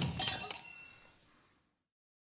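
Cartoon crash sound effect: a knock, then a clinking, clattering crash about a quarter of a second in, with a brief ringing note that dies away within about a second and a half.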